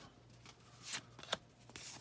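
Faint rustle of cardboard baseball cards being slid one off another in a handheld stack, with a couple of brief soft swishes about a second in.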